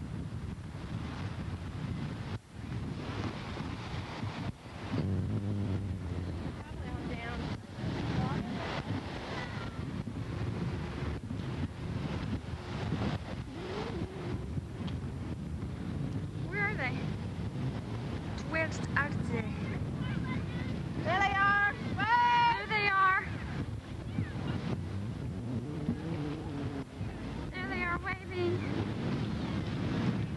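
Steady low rumble of wind buffeting a camcorder microphone, mixed with ocean surf. Short high-pitched voices call out a few times in the later part, loudest about three-quarters of the way through.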